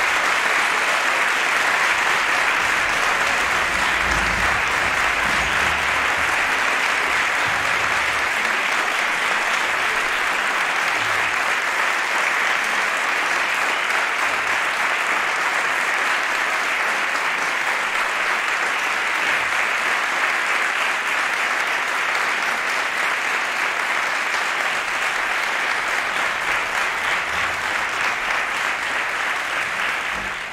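Audience applauding steadily, one long, unbroken round of clapping.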